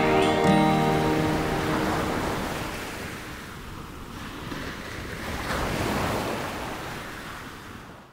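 Small sea waves washing onto a sandy shore: a steady rushing wash that swells about five to six seconds in, then fades out near the end. The last notes of music die away in the first second or two.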